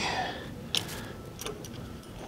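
A few light metallic clicks from a valve spring compressor being handled and adjusted on a cylinder head, the sharpest about three quarters of a second in, followed by fainter ticks.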